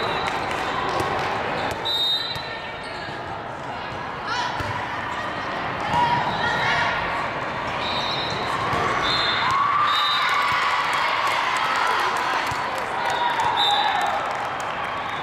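Indoor volleyball play in a large hall: indistinct calls and chatter from players and spectators, with the slaps of a volleyball being hit and bouncing on the hardwood court.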